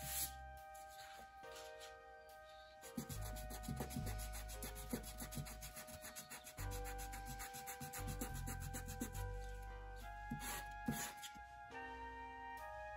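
Rubber eraser rubbing over drawing paper in quick back-and-forth strokes, taking pencil marks off an inked illustration, over background music.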